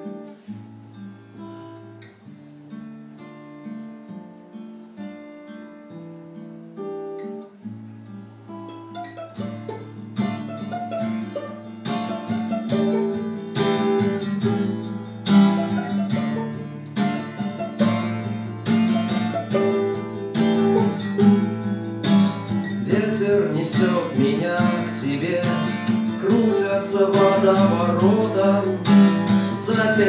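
Acoustic guitar and violin playing the instrumental introduction of a song. It opens softly with held and picked notes, then the guitar strums harder and louder from about ten seconds in. In the second half a violin line with vibrato rises over the strumming.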